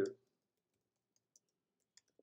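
Faint keystrokes on a computer keyboard: a few light, scattered clicks of typing.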